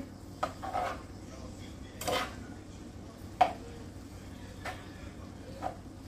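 A spatula scraping and knocking against a frying pan as ground beef and chopped onions are stirred, in short irregular strokes about once a second.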